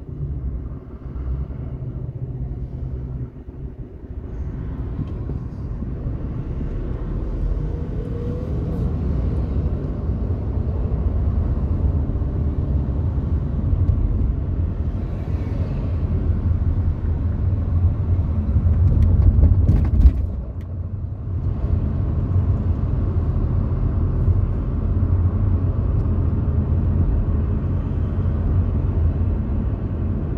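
Low engine and road rumble inside a car's cabin, growing louder a few seconds in as the car pulls away from a stop and drives on at street speed. A couple of brief knocks near the loudest point, about two-thirds of the way through.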